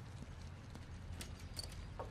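Faint footsteps on a hard floor, a few light taps and clicks over a low steady hum.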